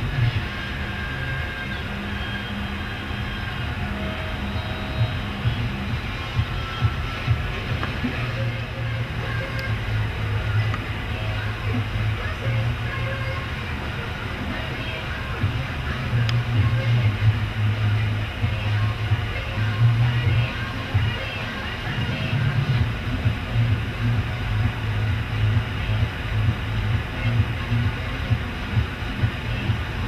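Loud pop music with a strong, pulsing bass playing from a parked police car's radio.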